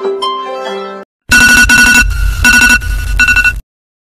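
A plucked-string tune plays for about a second and cuts off. After a short gap, a very loud electronic phone ringtone trills in short pulses for about two seconds, then stops abruptly.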